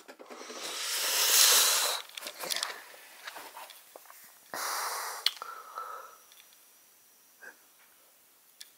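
A cloth cover rustling and sliding as it is pulled off a motorbike, swelling over the first two seconds, then a few light knocks and a second, shorter rustle about halfway through.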